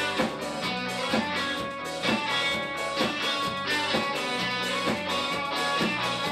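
Live punk-rock band playing an instrumental passage without vocals: electric guitars strumming chords over bass and drums, with a steady beat of about two drum hits a second.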